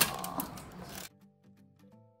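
About a second of rustling and clicking handling noise as gloved hands work the rubber trim around an empty car rear-window frame. It cuts off suddenly, and quiet background music with held notes follows.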